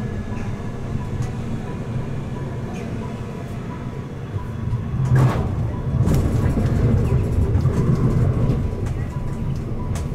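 Siemens Avenio low-floor tram running on rails, heard from inside: a steady low rumble of wheels and running gear. About five seconds in there is a sharp clack, and after it the running is louder and rattlier.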